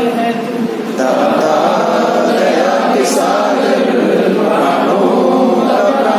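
A mixed group of men and women singing a Hindi prayer song together, many voices in unison. The singing dips briefly just before a second in, then carries on at full strength.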